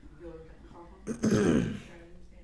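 A man clearing his throat into a handheld microphone, one loud rasping clearing about a second in that lasts under a second, its pitch sliding down.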